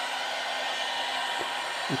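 Electric hot air brush running: a steady rush of blown air with a thin, steady whine from its motor.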